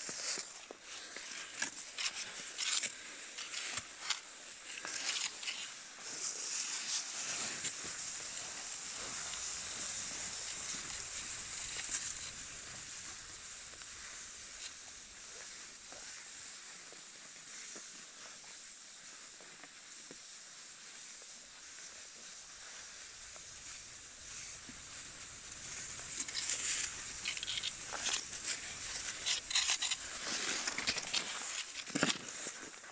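Cross-country skis sliding over snow in ski tracks: a steady hiss of the glide, with crunching and clicking from strides and pole plants in the first few seconds and again near the end.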